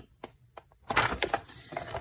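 Paper pages of a paperback textbook being flipped and the book pressed open flat. After a brief quiet there is a burst of rustling and crinkling about a second in, which settles into softer rustling.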